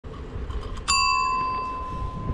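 A dome-type handlebar bicycle bell struck once about a second in, ringing out with a clear ding that slowly fades, over a low rumble of wind and road.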